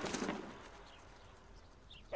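Quiet outdoor ambience with a couple of faint bird chirps, one about a second in and one near the end.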